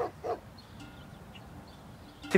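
Two short yelp-like vocal sounds, about a third of a second apart at the very start, then faint background quiet.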